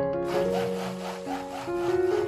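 Braun Multiquick stick blender switching on a moment in and running in cold-process soap batter in a plastic pitcher: a steady whirring noise with a fast pulsing churn, over background piano music.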